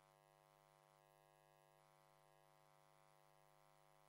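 Near silence: only a faint steady hum.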